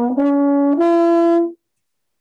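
Trombone played legato, outlining a chord in an ascending arpeggio: three sustained notes stepping upward, the last and highest held longest before it stops abruptly about a second and a half in.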